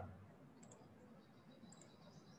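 Near silence, with two faint computer-mouse clicks about a second apart.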